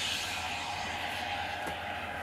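Rushing, hissing noise of a missile strike on a tank, fading slowly, played back from film.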